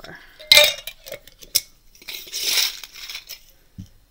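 Small metal jingle bells clinking and jingling in a bowl as they are handled: a sharp clink about half a second in, another at about a second and a half, then a longer jingle near the middle.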